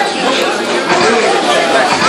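Chatter of several people talking over one another in a large hall.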